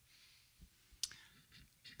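Near-silent room tone with one sharp, short click about a second in.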